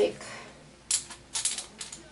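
A few sharp clicks and rattles of small hard objects being handled: one about a second in, then a quick run of three near the end.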